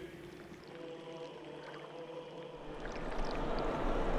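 Faint steady tones die away, then about two and a half seconds in a low rumble and an even wash of noise rise up: the ambience of a large, crowded, reverberant stone interior.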